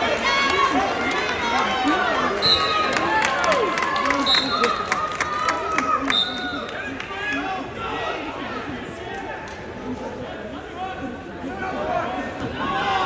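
Spectators and coaches shouting over each other in a gym during a wrestling bout, loudest in the first half and easing off after about seven seconds. A run of sharp claps or slaps and a few short high squeaks come between about two and six seconds in.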